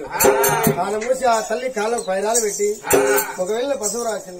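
Oggu Katha folk storytelling: a man's voice singing or chanting in a wavering, bleat-like manner on held notes, with a few sharp strikes on the accompanying barrel drum, the clearest near the start and about three seconds in.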